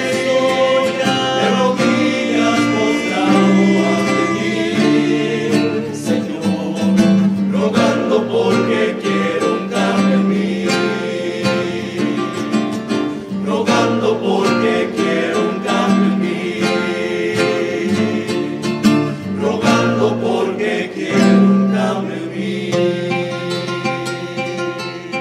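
A rondalla playing live: several acoustic guitars strummed and plucked over a double bass, with men's voices singing together.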